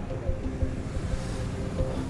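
Police motorcycle engine idling at a standstill, with wind buffeting the microphone as a low, uneven rumble.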